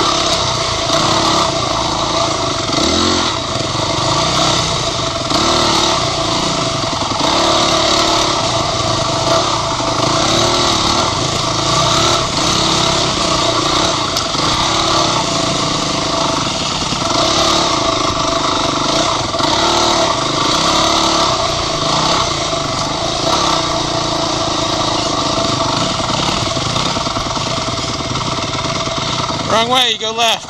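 Dirt bike engine revving up and down continuously as it is ridden along a wooded trail, pitch rising and falling every second or two with the throttle, with a quick rev near the end.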